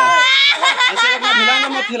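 A boy crying loudly, one long wail that breaks into wavering sobs.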